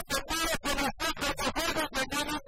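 A male coplero sings a fast, syllable-by-syllable llanero contrapunteo verse into a microphone, backed by a llanera harp and bass guitar.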